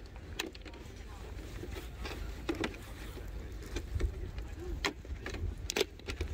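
A flat-pack sugarcane-based biopolymer tree shelter being rolled into a tube by hand, its side tabs slid into slots: scattered clicks and scrapes of the stiff sheet, over a low rumble of wind on the microphone.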